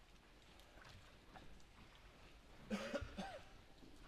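Near-silent room tone with faint scattered rustles, broken by one short cough about three seconds in.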